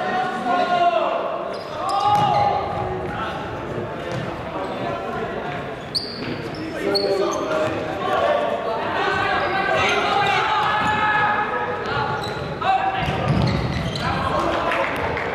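Futsal ball being kicked and bouncing on a wooden sports-hall floor amid players' shouts and calls, echoing in the large hall.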